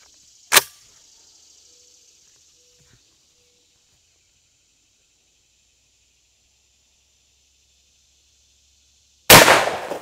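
A single shot from a TriStar Viper G2 28 gauge semi-automatic shotgun firing a Brenneke slug, very loud and sudden near the end, trailing off with reverberation. About half a second in, a short sharp click.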